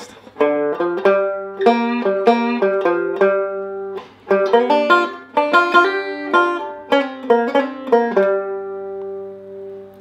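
Five-string banjo playing two blues licks in G one straight into the other, built on the G blues scale and G7 arpeggio notes. There is a brief break about four seconds in, and the last note rings out for about two seconds at the end.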